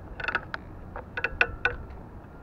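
Irregular light metallic clicks and clinks, several in quick clusters, each with a brief ringing tone, over a faint low rumble.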